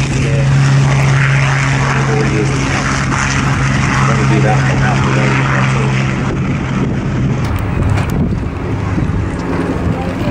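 Hawker Hurricane's Rolls-Royce Merlin V12 engine running at taxi power, a steady low propeller drone that fades and breaks up after about six seconds as the fighter taxis past.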